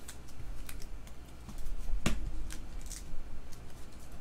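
Baseball trading cards being handled and sorted by hand, with short clicks and slides as the cards rub and snap against each other. There is a louder tap about two seconds in.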